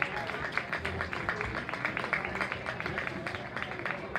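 Crowd applause from the stands: many hands clapping irregularly, with voices murmuring underneath.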